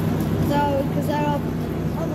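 Steady low rumble and hum of a London Underground Bakerloo line train approaching in the tube tunnel, with two short high-pitched tones about half a second and a second in.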